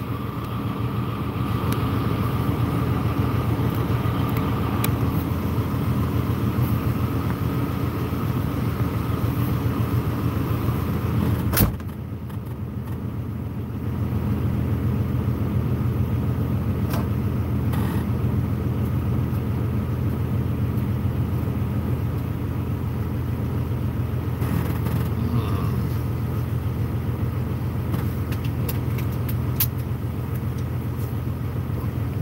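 Semi truck's diesel engine idling steadily, heard from inside the cab as a low rumble. A sharp click comes about twelve seconds in, and the sound drops for about two seconds before returning to its steady level.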